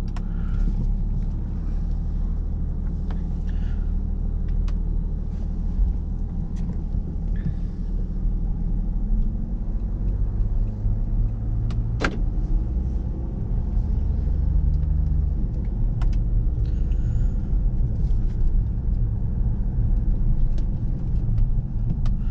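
Jaguar XF's 3.0-litre twin-turbo diesel V6, heard from inside the cabin as the car pulls away gently after a short warm-up and drives slowly on a narrow lane: a steady low rumble of engine and road noise. There are a few light clicks, and one sharp click about twelve seconds in.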